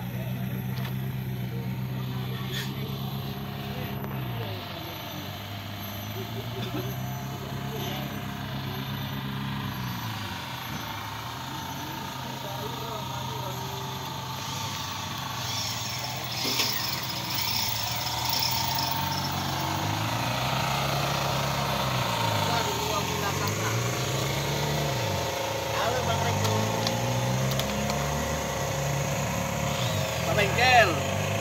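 An engine running steadily, its pitch sagging and recovering several times, with voices in the background.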